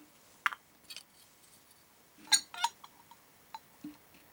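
A few light clicks, then two sharp clinks with a brief ring a little past two seconds in, and small taps near the end: a plastic spoon being set against the rim of a glass jar.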